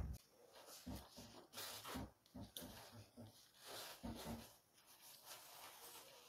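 Near silence: quiet room tone with a few faint, soft intermittent sounds.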